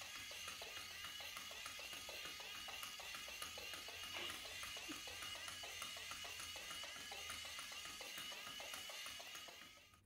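Catch Me Kitty Deluxe motorized toy mouse running: a small electric motor whirring with a steady high whine and rapid ticking, fading out near the end.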